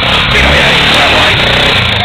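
Dirt bike engine running hard under load as the bike climbs a steep dirt slope and passes close by, loud and rough throughout.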